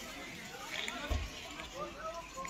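People talking in the background, with a brief low thump about a second in.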